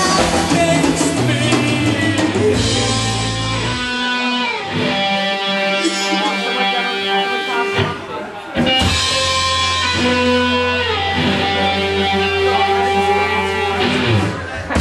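Rock song with guitar and drums, its loudness dipping briefly about eight seconds in.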